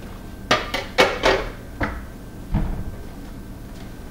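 Kitchen clatter: a quick run of sharp clicks and knocks about half a second to a second and a half in, then two more knocks, the last a dull thump.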